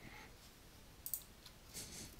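A few faint, separate clicks of computer keys: a soft one at the start, a sharp one about a second in and another near the end.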